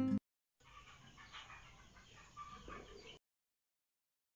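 Faint chicken clucking in the background, starting about half a second in and cutting off abruptly about three seconds in, just after guitar music ends.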